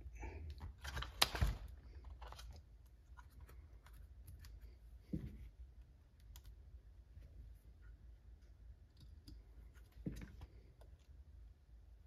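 Faint, scattered clicks and light taps of a hand screwdriver driving a small screw, fitted with a brass insert, into a brass steering knuckle on an RC crawler's plastic chassis. A sharper click comes about a second in, and small knocks near five and ten seconds in.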